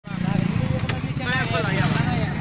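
A small engine running steadily with a low rumble, with voices talking over it.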